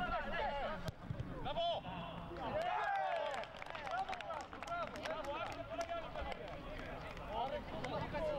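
Several people shouting and calling out on a football pitch, voices overlapping, with a sharp knock about a second in.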